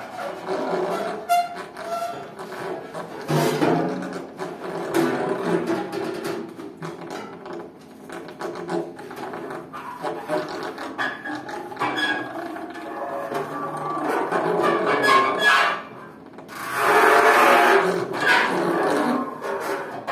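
Free-improvised duet of tenor saxophone and snare drum: the saxophone plays sustained and broken tones while the snare is tapped and worked over its head with a stick and bare hands in uneven clicks and taps. The loudest passage comes near the end.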